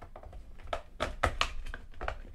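C-cell batteries clicking and knocking against a plastic battery compartment and its springs as they are pressed into a tight-fitting holder: a run of quick sharp clicks, mostly in the second half.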